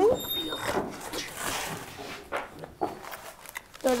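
Baking paper rustling and crinkling as it is handled, with a couple of light knocks.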